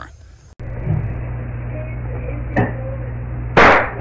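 Steady mains hum picked up by a home security camera's microphone, with a faint click about two and a half seconds in. Near the end comes a sudden, very loud burst: a soda can bursting.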